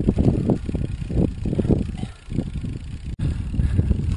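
Wind buffeting a helmet-mounted action camera's microphone, an uneven low rumble that swells and fades, with a momentary dropout about three seconds in.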